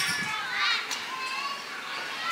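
Children's voices in the background, with a high rising-and-falling call about half a second in.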